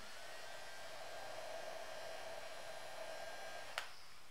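Electric makeup brush cleaner-and-dryer spinning a brush: a steady small-motor whine that stops with a click near the end.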